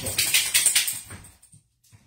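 A dog's metal collar tags jingling in a quick rattle for about a second, then fading out.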